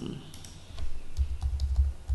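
Typing on a computer keyboard: a run of quick, irregular key clicks, with a low rumble over the second half.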